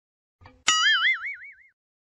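A cartoon-style "boing" sound effect: a sharp twang less than a second in whose pitch wobbles up and down as it fades out over about a second, just after a faint click.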